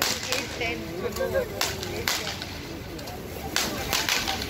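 Firecrackers going off in the street: about five sharp, separate cracks spread across a few seconds, with crowd voices behind them.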